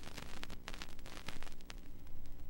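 Vinyl record surface noise after the song has ended: a steady hiss with irregular crackles and clicks.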